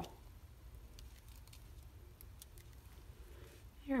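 Quiet room tone with a low hum and a few faint, light ticks as small adhesive resin hearts are picked off their backing sheet and pressed onto a paper card.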